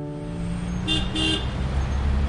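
Steady road-traffic rumble, with a vehicle horn giving two short toots about a second in.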